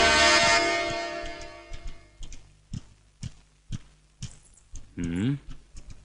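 Film background music fades away, then footsteps sound on a hard floor, sharp and regular at about two a second. A short voiced sound comes near the end.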